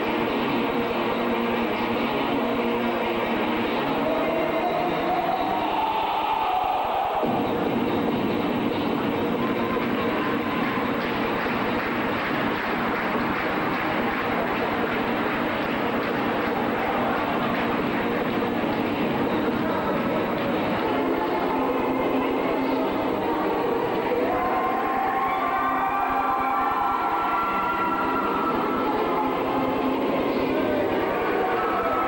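Recorded music for a dance routine played loudly over a gymnasium sound system, heard through a camcorder's microphone as a dense, distorted wash. A rising tone comes about five to seven seconds in, and a few held higher notes near the end.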